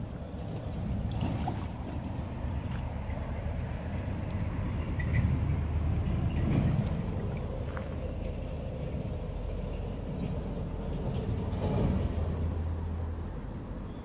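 Wind rumbling on the microphone, with the splashing of a large hooked carp thrashing its tail at the surface in shallow water as it is played in. The loudest swells come midway and again near the end.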